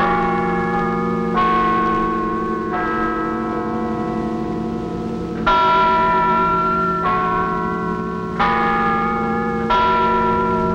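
Bells chiming a slow melody, roughly one stroke every second and a half, with a longer pause about three seconds in. Each note rings on under the next.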